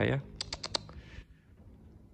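A plastic toy figure with its card tag being handled and swung about, giving a quick run of about five light clicks in the first second.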